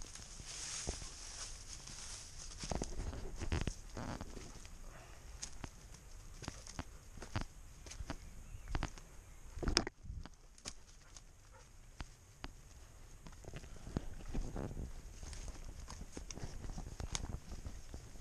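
Footsteps going down a steep bush track under a heavy load, with undergrowth and ferns brushing against clothing. There are irregular knocks and rustles, and one sharp knock about halfway through.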